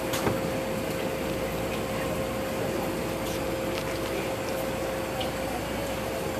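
Automatic tunnel car wash machinery running: a steady hum with one constant mid-pitched tone over an even wash of spraying water and motor noise. Heard through the viewing-window glass.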